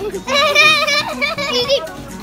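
A young child's high-pitched voice, one long wavering squeal lasting over a second, with other voices underneath.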